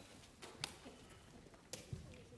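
Nearly quiet room with a few faint, short clicks and taps: two close together about half a second in and two more near the end.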